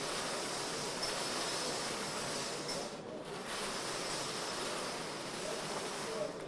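Numbered balls tumbling in a hand-turned wire lottery cage, a steady dense rattle that dips briefly about halfway.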